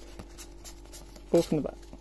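Pokémon trading cards being slid and shuffled by hand, with faint papery scratches and swishes as one card passes over another. A short spoken word comes a little past halfway.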